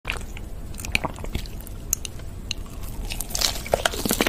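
Close-miked crunching of a bite into a sauce-glazed fried chicken drumstick, with dense crackling starting about three seconds in. Before it, scattered faint clicks.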